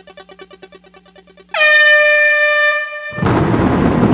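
A rapidly pulsing synth tone fades, then an air-horn sound effect sounds once for about a second and a half, dipping slightly in pitch at its onset. The full reggae/dancehall backing track kicks in just after it, near the end.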